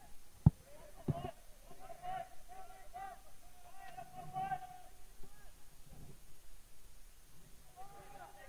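Faint open-field ambience of distant voices calling out, with a single sharp knock about half a second in.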